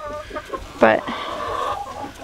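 Laying hens clucking, with a drawn-out call that runs for about a second after the middle.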